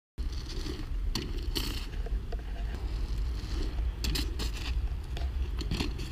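A BMX bike ridden over snowy paving stones, giving scattered clicks and knocks over a steady low rumble on the microphone. The sound cuts in suddenly just after the start.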